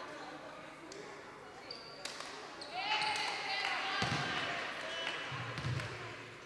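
A volleyball bouncing with dull thuds on a hardwood sports-hall floor, mostly in the second half, mixed with players' shouted calls. The sounds echo in the large hall.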